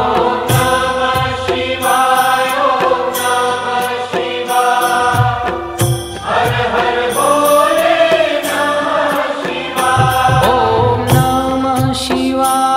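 Devotional mantra chanting set to music: held sung notes over low drum beats.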